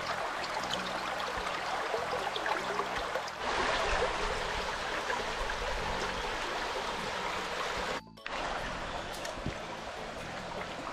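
Shallow stream running steadily over pebbles and stones, with background music underneath. There is a short drop-out about eight seconds in.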